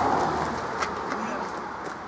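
A plastic-wrapped compressed bale of peat moss scraping and rustling as it is slid out of a minivan's cargo area and hefted up, loudest at first and fading within about a second and a half, with a few light knocks.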